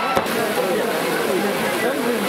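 Heavy rain pouring down in a steady downpour, with people's voices over it and a sharp click about a quarter-second in.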